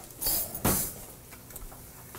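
A brief rustling scrape, then a single sharp knock of kitchenware about two thirds of a second in.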